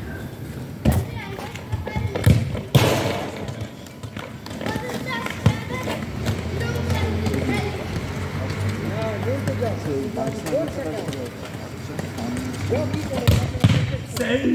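A football being kicked and thudding on a hard court, a handful of sharp thuds with the loudest about three seconds in and two close together near the end, under indistinct voices and background music.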